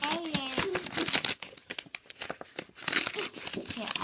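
White tissue paper crinkling and tearing as a present is unwrapped by hand, in quick rustling bursts that are loudest about three seconds in.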